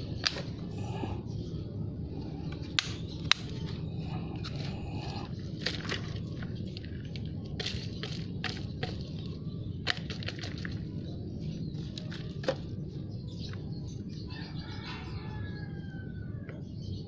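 Scattered crackles, taps and clicks of a thin plastic-bottle pot being handled as water spinach is pulled out by its roots and the soil is broken off into a bucket, over a steady low rumble.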